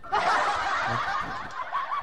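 Laughter: a burst of snickering that starts just after the beginning and tapers off toward the end.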